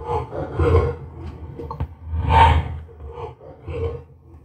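Playback of an EVP recording through a stereo amplifier: a series of breathy, hissing bursts over a steady low hum, the loudest a little over two seconds in. The recordist takes these sounds for the voice of his dead son.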